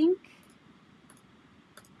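A few faint, sharp computer mouse clicks, coming singly or in quick pairs with pauses of about half a second to a second between them.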